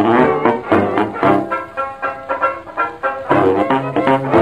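Instrumental passage of a 1925 Victor 78 rpm dance-orchestra record, with no singing. The band plays a busy, rhythmic chorus that eases off briefly about two seconds in, then comes back in full.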